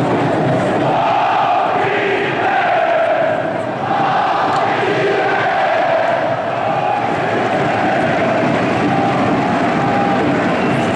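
A large terrace of football supporters chanting a song in unison, loud and sustained, thousands of voices singing together.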